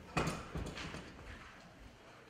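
Handling noise on a handheld microphone: a sharp thump, then a few softer knocks and rustles over about a second, fading away.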